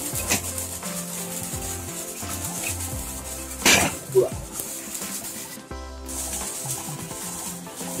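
Background music with a stepped bass line, over the steady splash of water pouring from a koi pond filter box's outlet into the pond. Two brief brushing noises come about halfway through.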